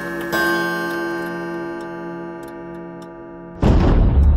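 A bell-like tone, struck about a third of a second in and slowly dying away over about three seconds. Near the end a sudden loud rumbling noise cuts in.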